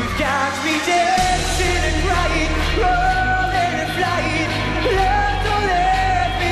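Pop song performed live: a lead voice singing long held notes over a backing track with a steady bass line.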